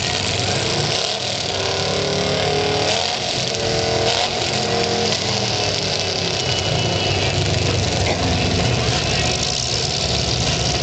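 Engines of several demolition derby cars running and revving together, their pitch rising and falling as the cars accelerate and back off, most clearly in the middle stretch.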